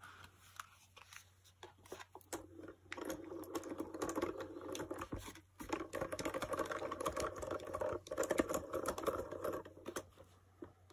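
Hand-cranked die-cutting machine being turned, its rollers and gears giving a steady crackling, clicking grind as the plate sandwich with a metal border die is pressed through. The cranking starts about two seconds in and pauses briefly near the middle.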